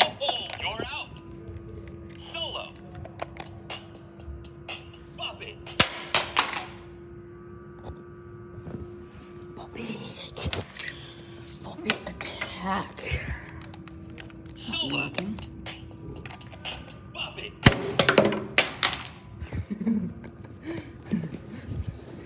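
Bop It toy being slapped and flicked on a hard floor: several sharp knocks, at the start, around six and ten seconds in, and a cluster near the end, with the toy's electronic voice and music sounding in between.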